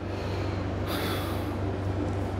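A steady low electrical hum, with one short breathy hiss about a second in: a person's sniff or breath close to the microphone.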